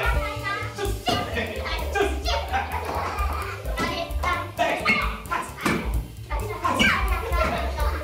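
Young children's voices calling out and chattering over background music.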